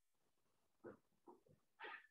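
Near silence, broken by a few faint, brief rubbing sounds of a whiteboard eraser wiping marker off the board.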